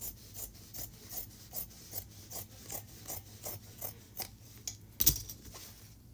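Fabric scissors cutting through interfaced fabric folded into four layers: an even run of snips, about two or three a second, followed by a single louder knock about five seconds in.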